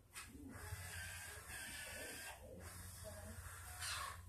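Film soundtrack playing through a television's speakers: a steady hissing noise that breaks off briefly about two and a half seconds in, over a low hum.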